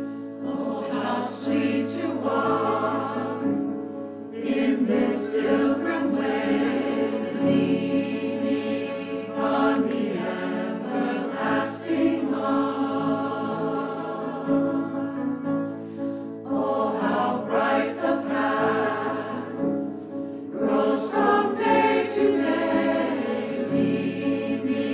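Mixed choir of men's and women's voices singing a sacred choral piece together in sung phrases, with brief breaths between them.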